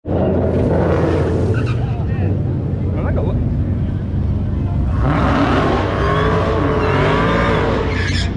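Ford Mustang's engine running as the car rolls down the drag strip lane, revving up and down more strongly from about five seconds in.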